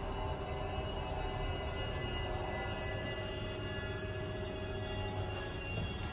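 A steady hum made of several held tones that do not change in pitch or level.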